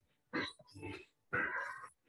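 A person breathing hard from exertion: two heavy breaths, each lasting over half a second.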